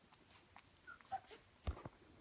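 Mini Bernedoodle puppies making a few faint, brief squeaks about a second in, followed by a couple of soft knocks near the end.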